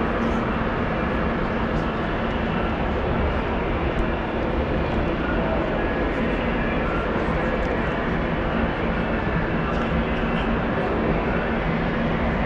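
Steady background din of a large crowded exhibition tent: a constant roar with a low hum and faint crowd chatter mixed in.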